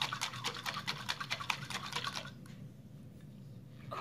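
A flour-and-cold-water slurry being shaken hard in a small lidded jar, a fast even rhythm of strokes that stops a bit over two seconds in.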